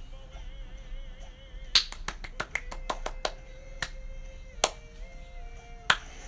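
Quiet background music with a wavering tone, cut by sharp snapping clicks: a quick irregular run about two seconds in, then a few single ones, the loudest near the end.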